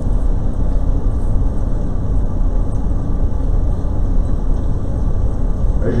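Steady low rumble and hiss of room noise in a large auditorium, with no distinct events.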